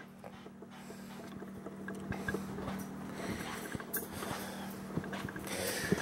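Light footsteps and small handling knocks inside a travel trailer, growing slightly louder, over a steady low hum that cuts off near the end.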